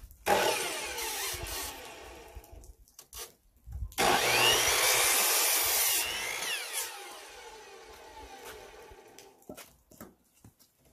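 Electric miter saw cutting 2x4 lumber, run twice: a first run starts just after the beginning and fades over a couple of seconds, then a louder cut about four seconds in lasts some two seconds before the motor winds down, falling in pitch, until near the end.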